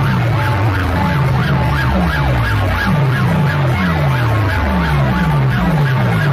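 Very loud DJ speaker stacks playing a competition track: a siren-like wail wobbling up and down several times a second over falling bass drops that repeat about twice a second.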